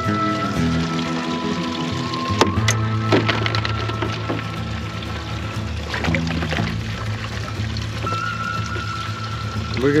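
Background music with sustained low notes and a held higher tone, with a couple of sharp clicks about two and a half seconds in.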